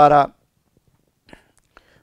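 A man's voice ending a phrase of Telugu speech, then a short pause with two faint small clicks.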